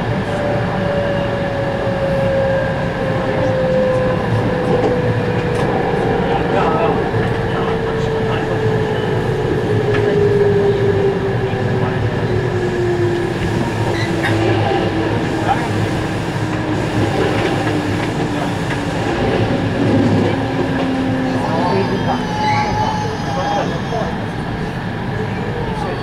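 Cabin noise of a JR West 221 series electric train slowing for a station stop: steady wheel-on-rail running noise under a drive whine that falls slowly in pitch as the train decelerates, with a few short squeaks near the end as it comes alongside the platform.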